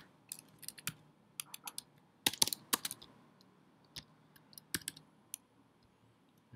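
Keystrokes on a computer keyboard, typed in short irregular runs of a few clicks with pauses between, as text is entered into form fields.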